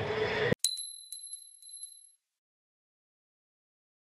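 Bright chime sound effect: a high ding struck about four times in quick succession, ringing out and fading within about a second and a half. Just before it, the live track sound cuts off abruptly.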